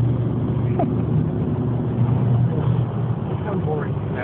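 Steady low drone of a car's engine and tyres at freeway speed, heard from inside the cabin.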